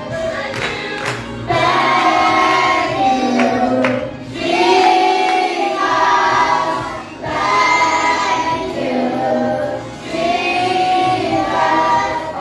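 A children's choir singing a gospel song together into microphones, in phrases of about three seconds with short breaths between them, an adult woman's voice among them.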